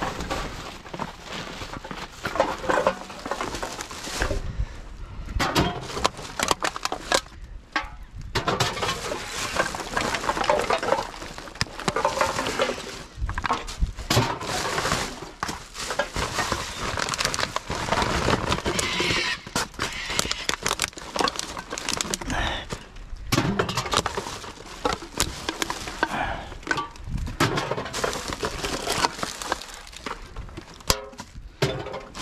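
Plastic garbage bags and loose rubbish rustling and crinkling as a gloved hand rummages through a dumpster, with many scattered sharp clicks and knocks.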